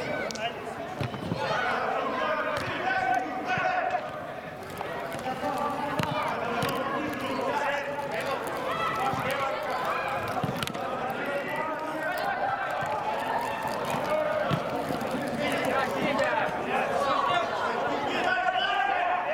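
Footballers' voices calling across an indoor pitch, with the sharp thuds of a football being kicked and bouncing now and then.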